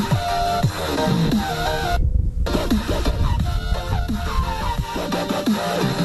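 Electronic dance music with a steady beat and repeated falling synth glides, played through the Bohm Impact Bluetooth speaker in its outdoor mode, which reduces the bass. The upper end drops out briefly about two seconds in.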